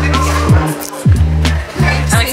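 Background music with a steady beat: deep bass notes and punchy bass hits that slide downward in pitch about twice a second.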